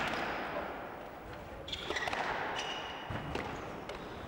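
Squash rally: the ball knocked by rackets and off the court walls, a few sharp knocks in the second half, with short high squeaks of shoes on the court floor over the murmur of the hall.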